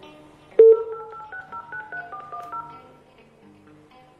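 A sharp hit with a short ringing tone about half a second in, then a quick run of telephone keypad tones, like a number being dialled, that stops about three seconds in. Soft background music runs underneath.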